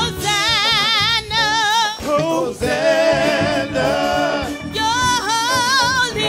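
A woman and a man singing a gospel song into microphones, with held notes sung in wide vibrato.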